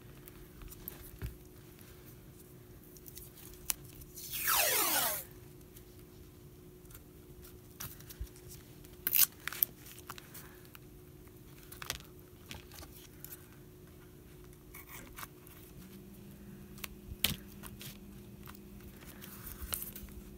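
Washi tape pulled off its roll about four seconds in: a loud ripping screech of about a second that falls in pitch. It is followed by scattered small clicks and rustles as the tape is torn and pressed down onto the paper page.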